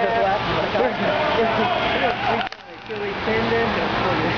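Indistinct voices of players and onlookers calling out over a steady hiss of noise in a large indoor soccer hall. No words can be made out, and the sound drops away abruptly for a moment about two and a half seconds in.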